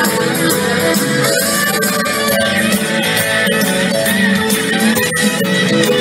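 Live soul band playing loudly without singing, with guitar to the fore.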